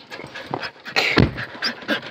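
Excited dog panting in quick short breaths as she scrambles about, with a single thump about a second in.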